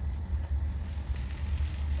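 Paratha frying in a non-stick pan: faint sizzling over a steady low rumble, the sizzle growing a little louder near the end.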